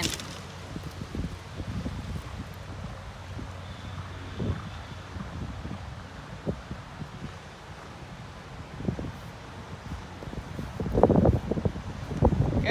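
Wind on the microphone, a low steady rumble with a few scattered knocks. About a second before the end it grows louder, with a quick run of thumps.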